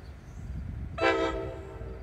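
NJ Transit Multilevel cab car's air horn giving one short blast about a second in, as part of a quilled horn salute. It is strongest for a moment, then fades out over the next half second, over a low rumble.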